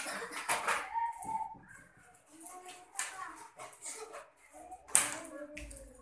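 Children's voices chattering in a small room, broken by a few sharp impact sounds, the loudest about five seconds in.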